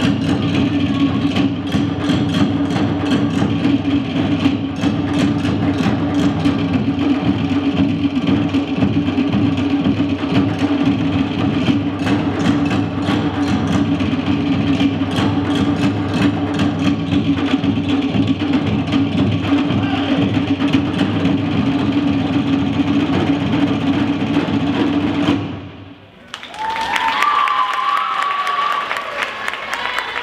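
Fast Polynesian drumming with rapid wooden slit-drum strokes over a steady low drum tone, which stops suddenly about 25 seconds in. The audience then applauds and cheers, with a rising whoop.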